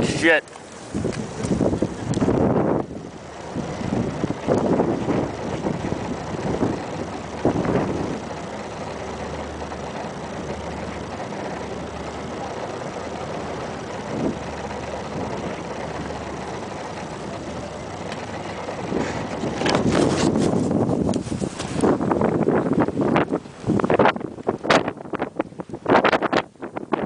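Strong sandstorm wind buffeting the microphone in gusts. It is steadier through the middle and heavier and choppier in the last several seconds.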